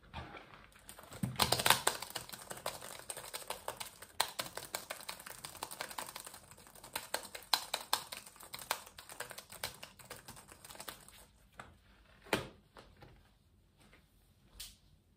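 Fast, haphazard typing on a small laptop's keyboard, with keys clattering in rapid bursts for about eleven seconds. A single sharp knock follows about twelve seconds in.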